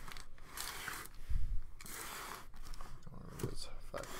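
Cardboard shipping case handled and turned in the hands: scraping and rubbing on the cardboard, with a dull knock about a second and a half in.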